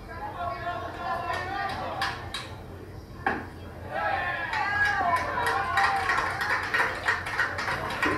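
People talking, with a few sharp clicks in between.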